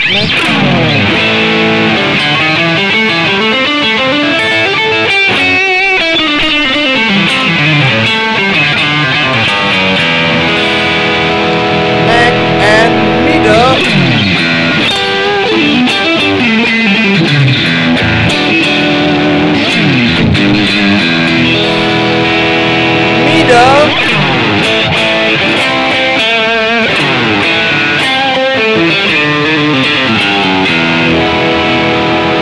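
Tokai AST-52 Goldstar Sound Stratocaster-style electric guitar played through heavy overdrive, a continuous run of distorted riffs and lead lines with slides and string bends.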